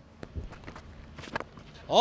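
Cricket bat striking a tape ball in a big free-hit swing: a sharp knock among a few fainter knocks.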